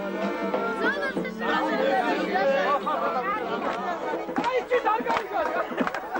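Several voices talking over one another, with music underneath, and a few sharp clicks or knocks in the last two seconds.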